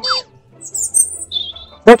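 A quick falling whistle, then a few short, high, bird-like chirps.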